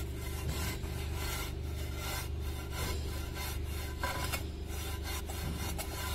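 Wooden straight edge scraped and rubbed over a fresh sand-cement floor screed in irregular gritty strokes, over a steady low hum.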